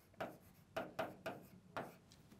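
Pen writing on an interactive whiteboard: a run of about six short, faint scratching strokes as a word is written out.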